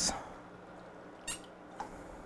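Quiet room tone with a steady low hum, broken by two short squeaky clicks a little past halfway.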